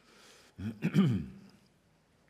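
A man clearing his throat once, a short voiced sound starting about half a second in and lasting under a second.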